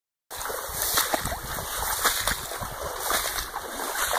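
Footsteps splashing and swishing through shallow standing water among marsh grass, in an irregular run of splashes about once a second.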